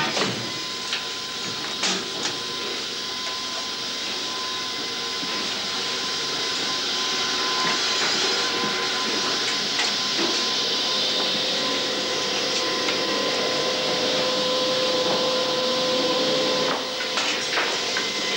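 Factory machinery running: a steady hiss with a faint whine and hum, broken by occasional short knocks, and a run of clattering near the end.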